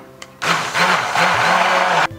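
A 500-watt hand blender running in a saucepan of liquid chocolate mirror glaze, switched on about half a second in. Its motor pitch dips and recovers several times as the blade works out lumps of chocolate.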